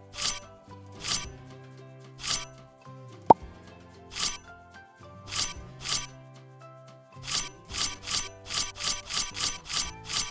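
Kitchen knife chopping a cucumber on a glass cutting board. Each cut is a crisp chop: they come singly and spaced apart at first, then in a quick run of about four a second near the end. A single sharp click sounds about three seconds in.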